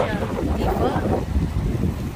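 Wind buffeting the microphone, a steady low rumble, with a voice trailing off in the first second.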